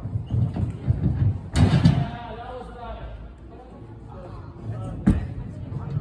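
Bare feet pounding down a sprung tumbling strip during a run-up, then a loud landing thud about a second and a half in. Voices follow, and there is another sharp thud near the end.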